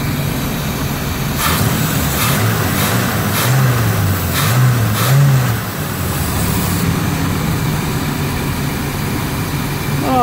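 Chevrolet 454 big-block V8 running at a slightly fast idle, its plug wires now in the correct firing order so it runs smoother on all eight cylinders. Its note dips and swells a few times in the first half, with several sharp clicks, then settles to a steady idle.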